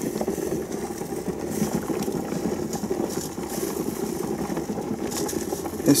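Water at a slow boil bubbling steadily in a large pot around a plastic pail of honey, with the thick, partly crystallized honey being stirred.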